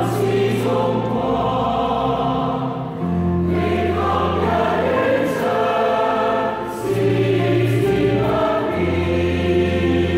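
Large choir singing a hymn, over held low notes that change pitch every few seconds.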